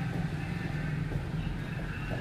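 Steady low background rumble with no clear footfalls or stamps.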